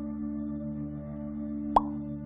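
Ambient background music of steady sustained tones, with a single short pop sound effect that sweeps quickly upward in pitch near the end.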